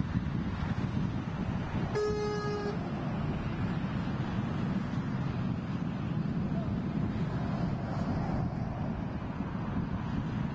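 Steady low wind rumble on the microphone, broken about two seconds in by a single short vehicle-horn toot: one held note lasting under a second.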